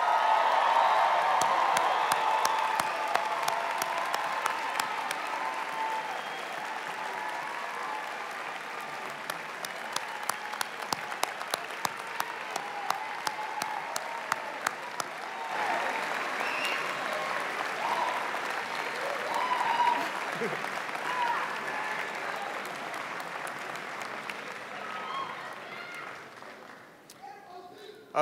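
Large audience applauding and cheering, with shouts and whoops over the clapping. Loudest at the start, it thins to scattered claps, swells again about two-thirds of the way through, then dies away at the end.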